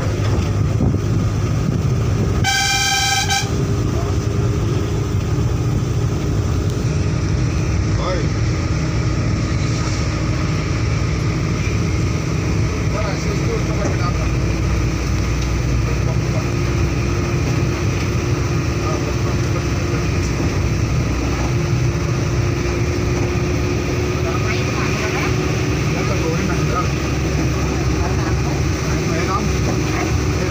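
Vehicle running along a hill road, heard from inside the cabin: a steady low engine and road rumble, with one short horn honk about two and a half seconds in.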